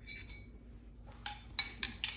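Three light metallic clinks in the second half, from a steel weld test plate and a metal welding gauge being handled and set down.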